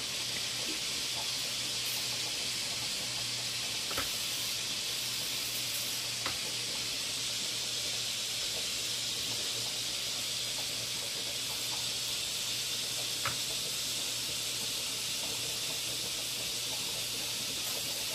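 Steady sizzling hiss of butter heating in a hot frying pan, with a few faint clicks.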